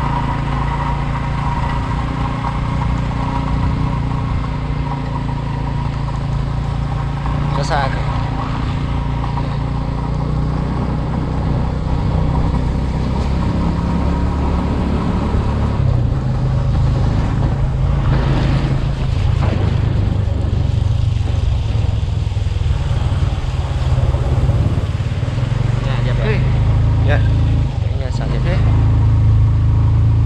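Motorcycle engine running steadily while riding, with wind and tyre noise on a wet road; the engine note gets a little louder about halfway through, and a brief wavering tone sounds about eight seconds in.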